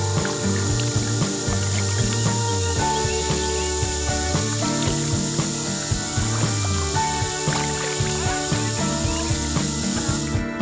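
Background music with a steady beat and sustained melodic notes.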